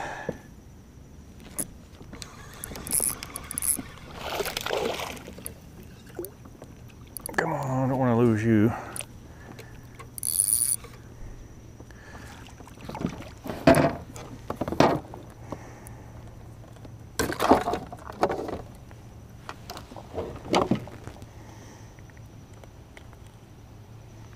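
Scattered knocks, taps and rustles of handling aboard a fishing kayak as a small bass is landed, with a short wordless vocal sound around eight seconds in and a brief high hiss a little later.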